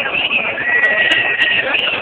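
A marching protest crowd: many voices mixed together, loud and continuous, with a long, high, steady tone sounding over them through the middle.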